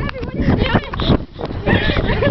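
Girls' voices laughing and shrieking without clear words, over rumbling wind and handling noise on the swinging camera's microphone.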